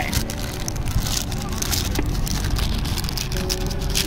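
Paper bag rustling and crinkling as its sticker seal is peeled open, in irregular crackles over a steady low rumble.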